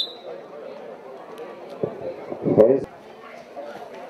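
Spectators' voices and chatter, with one loud shout about two and a half seconds in. The very start catches the tail of a referee's whistle blast.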